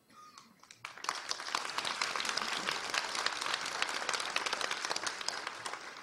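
Audience applauding: many hands clapping, starting about a second in, holding steady, then fading away near the end.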